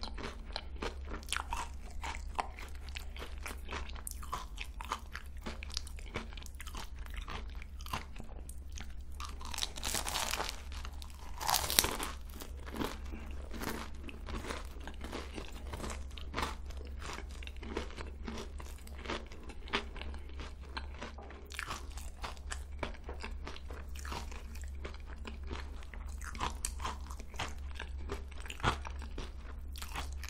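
Close-miked chewing of crisp croquant choux pastry: a steady run of small crunches from the crumbly crust. A louder burst of crackling crunches comes a little before halfway.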